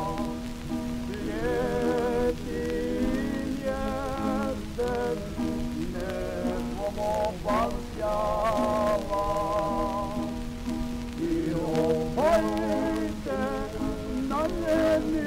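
A slow Croatian folk song sung by a tamburitza and singing society, voices holding long notes with vibrato over plucked tamburitza accompaniment. It is heard from an acoustically recorded 1910s Columbia 78 rpm shellac disc, with steady crackle and hiss of surface noise underneath.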